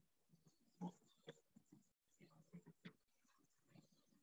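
Near silence: room tone with a few faint, short sounds, the clearest about a second in and a few more around the three-second mark.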